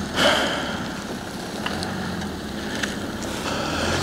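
Volkswagen Touareg's 3.0 V6 diesel engine running at low speed as the SUV crawls onto uneven mud moguls, a steady low hum under outdoor noise, with a short burst of noise just after the start.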